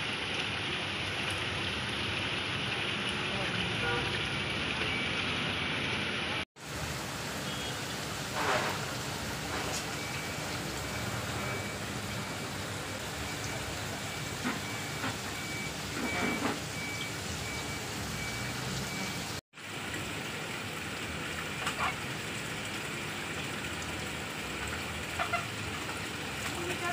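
Steady bubbling and splashing of aquarium aeration and filter water across many tanks. The sound cuts out briefly twice.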